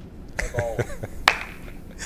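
A brief call from a person's voice, then a single sharp click, the loudest sound, over the low hum of a large hall.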